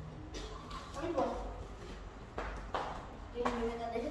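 Girls' voices making brief, indistinct vocal sounds, with a few short sharp sounds in between, over a steady low hum.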